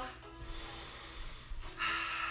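A woman breathing hard, winded from an all-out exercise burst: a long breath, then a stronger one near the end. Quiet background music with a held note runs under it.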